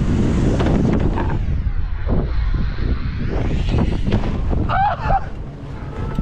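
Wind buffeting the microphone of a camera mounted on a BMX rider as he rolls fast down the concrete run-in and into the air, a dense rumbling rush throughout. A short shout comes about five seconds in.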